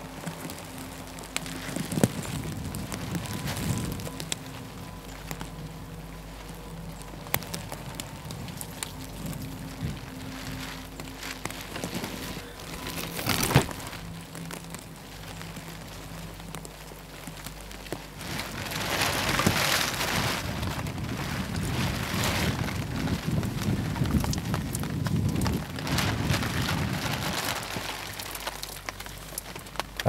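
Rain falling on a tarp, with many small drops ticking on it and wind gusting. The gusts swell louder in the second half, as the tarp flaps in the high wind.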